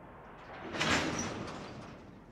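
Double-stack container train rolling past, with a short loud rushing burst that swells about half a second in, peaks near one second and fades over most of a second.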